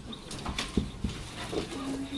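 Whiteboard marker writing on a whiteboard: faint scratchy strokes and small squeaks over classroom room noise.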